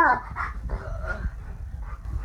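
A dog moaning: one loud moan falling in pitch right at the start, then two or three shorter, quieter moans over the next second or so.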